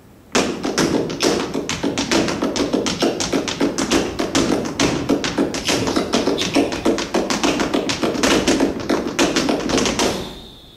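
Flamenco shoes drumming out fast zapateado footwork on a hard floor, a rapid unbroken run of heel and toe strikes at about seven a second. It starts abruptly just after the beginning and runs to the end without pause.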